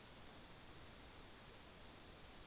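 Near silence with faint hiss: the web stream's sound drops out while the player loads the other camera.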